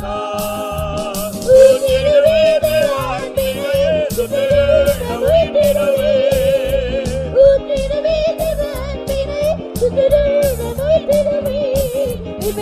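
Devotional music: a singing voice carries a wavering, heavily ornamented melody over a steady rhythmic beat.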